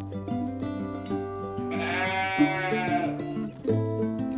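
A sheep bleats once, a long wavering call about a second long, near the middle. It is heard over background guitar music.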